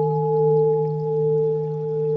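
Background music holding one steady, sustained ringing tone like a singing bowl or a drone chord.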